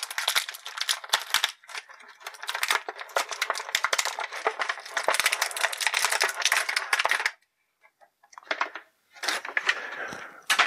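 Clear plastic blister packaging crinkling and crackling in rapid clicks as hands work a toy figure out of it. The crinkling breaks off about seven seconds in for a moment of silence, then resumes briefly near the end.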